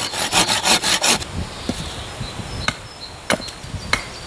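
Hand pruning saw cutting through a fresh branch in quick back-and-forth strokes, stopping about a second in. Later come three sharp, separate knocks of a tool striking wood, about half a second apart.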